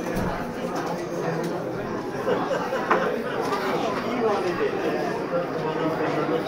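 Many people talking at once in a busy pub: a steady hubbub of overlapping voices, with one brief knock about halfway through.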